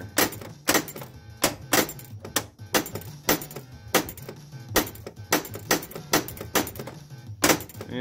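Pinball machine in play: a string of sharp mechanical clacks from the flippers and ball, about three a second and unevenly spaced, over the game's music. The flipper is being tested after a rebuild with a new coil sleeve, because it had been sticking and not returning fully.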